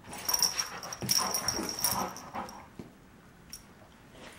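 A yellow Labrador and a West Highland white terrier play-fighting: a busy stretch of dog vocal noises and scuffling for the first two and a half seconds, then quieter.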